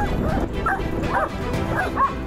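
A dog barking in several short, high yips, about two or three a second, over background music.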